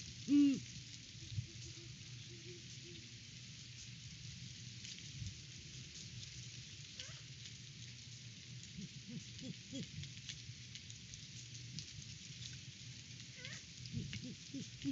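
Great horned owl giving a loud, deep hoot right at the start. Fainter hoots from another owl in the distance follow in the second half, and a third owl gives a short rising squawk about seven seconds in and again near the end. All of it sits over a steady rush of wind noise.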